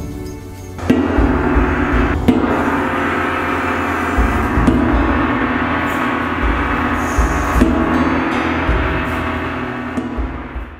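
A large handmade brass gong struck about four times, each strike ringing on long and running into the next, as the finished gong's tone is tested.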